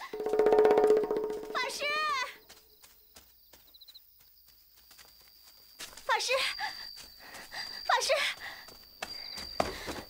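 A young woman's voice crying out from off, pleading for help: a long, loud wail in the first second or so, then shorter high, wavering calls about two, six and eight seconds in.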